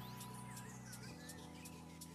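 Faint background music: a held chord that changes about a second in, over a soft ticking beat of about three ticks a second, with a few short chirp-like glides.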